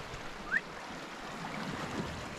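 Steady wash of the sea against the rocks, with a brief rising chirp about half a second in.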